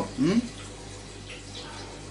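A short murmur from a man, then faint sips of pale lager from a glass, over a steady low electrical hum.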